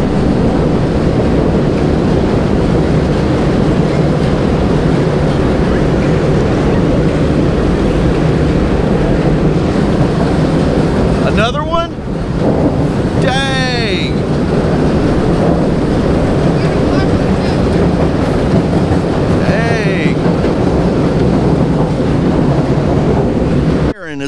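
A train crossing the railroad bridge directly overhead, heard from beneath it: an extremely loud, steady rumble and rattle that lasts throughout.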